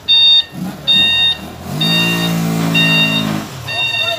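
Vehicle reversing alarm beeping about once a second, five beeps in all. A lower steady horn-like tone sounds for about a second and a half in the middle.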